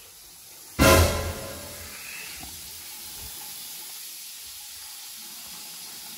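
Bathroom sink faucet running: water pouring into the basin as a steady hiss, which starts with a loud burst about a second in.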